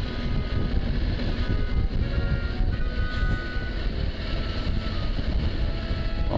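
Motorcycle engine running steadily while riding along a street, with wind rumbling on the microphone.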